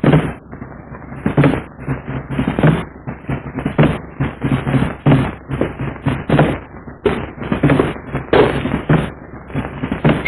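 A fast, uneven run of sharp knocks and cracks, several a second, over a low steady hum.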